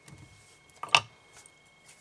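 Mostly quiet, with a few faint ticks and one sharp click about a second in. These are small handling sounds of tools and thread at a fly-tying vise while the tying thread is being started on the hook.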